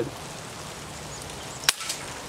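A single shot from a Daisy 880 Powerline multi-pump air rifle firing a .177 hunting pellet: one short, sharp crack near the end.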